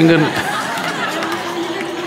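A man says a brief word and chuckles, then a room of listeners laughs and murmurs steadily for more than a second.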